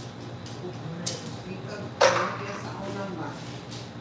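Mahjong tiles clacking on the table as players draw and discard. One sharp, loud clack about two seconds in follows a lighter click about a second in, over a murmur of background voices.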